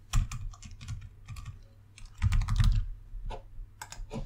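Computer keyboard typing: a short run of keystrokes at the start, a faster and louder run a little past halfway, then a few single clicks near the end.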